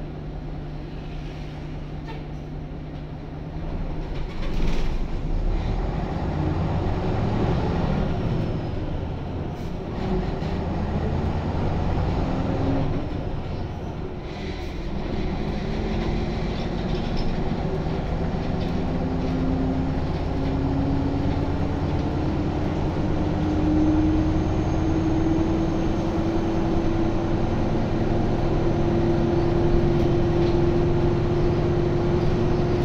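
Jelcz 120M city bus's WSK Mielec SWT 11/300/1 diesel engine, heard inside the passenger cabin: running steadily at first, then about three and a half seconds in it pulls away and accelerates, its pitch rising. The engine note dips about halfway through, then climbs slowly again. A thump comes about five seconds in, and there are a few smaller knocks from the body.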